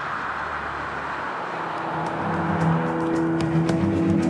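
A car's road rush swells as it draws closer. Music comes in about halfway through, with a ticking beat starting near the end.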